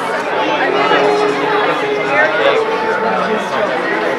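Overlapping chatter of several people talking at once in a metro station, with no single voice standing out.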